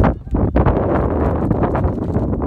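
Wind buffeting the microphone: a loud, gusty rumble.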